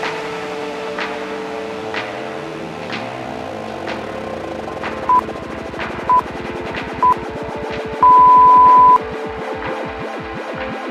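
Electronic workout music with a steady beat and a quickening pulse, over which a timer beeps three short times about a second apart and then once long for about a second. The beeps count down to the change of exercise interval.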